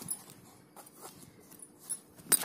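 Faint rustling and small crinkling clicks of crumpled paper stuffing being handled inside a sneaker.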